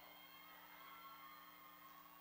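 Near silence: only a faint, steady background hum.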